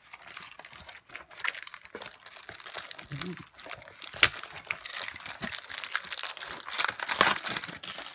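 A shiny trading-card foil packet being handled and torn open: crinkling and crackling wrapper with sharp clicks, busier and louder in the second half.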